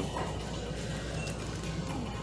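Faint background music playing over the shop's low ambient noise.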